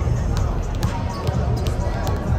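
Basketballs bouncing on a hardwood court during warmups, sharp knocks at irregular moments from several balls, over steady crowd chatter echoing in a large arena.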